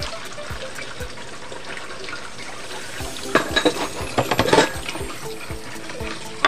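Tap water running into a stainless steel sink as dishes are rinsed by hand, with a cluster of clinks and clatters of dishes between about three and five seconds in.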